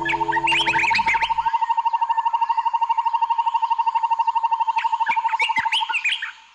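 The song's final chord dies away in the first second and a half, leaving bird-like chirps over a steady, fast-pulsing electronic tone of about ten pulses a second.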